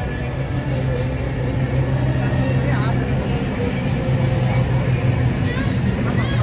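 Coach bus engine running with a steady low drone as the bus moves slowly past, with people's voices in the background.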